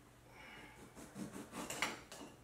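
A kitchen knife cutting through a fresh lime, with one sharp tap just before the end as the blade meets the board.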